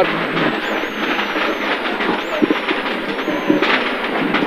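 Rally car driven hard on a tarmac stage, heard from inside the cabin: steady engine and road noise, with a couple of short knocks in the second half.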